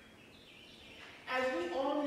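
Quiet room tone with faint high chirps, then about a second in a person's voice starts, loud, holding long pitched notes.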